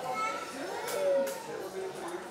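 A small group of adults laughing and chattering excitedly, with a couple of short light clicks.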